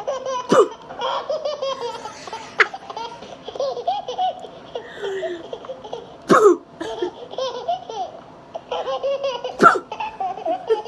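A woman laughing hard and helplessly, in long high-pitched peals, with a few sudden sharp louder moments.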